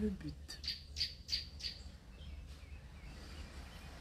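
A bird chirping: about five short, high chirps in quick succession, roughly three a second, then fainter ones, over a low steady hum.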